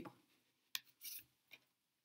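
Near silence broken by faint handling of tarot cards spread on a wooden table: a light tick, a short soft brushing about a second in, and another small tick as cards are slid out of the fanned deck.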